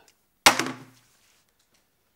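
A single loud thud about half a second in, dying away within half a second.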